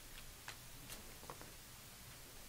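Quiet room tone with a few faint, short taps less than half a second apart: footsteps of a person walking across the room.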